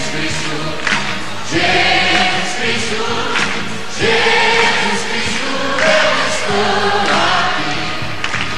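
Live band music with a choir singing long held phrases between verses of a Portuguese-language religious pop song.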